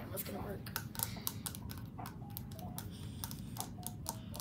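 Fingertips and nails tapping and scratching on a plastic Kuromi-figure hairbrush for ASMR, a quick irregular run of sharp little clicks.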